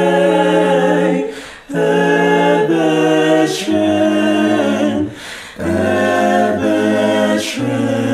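A small mixed group of five voices singing a cappella in close harmony, holding long sustained chords with two short breaks for breath, about a second and a half and five seconds in. A low male voice joins under the chord from a little before four seconds.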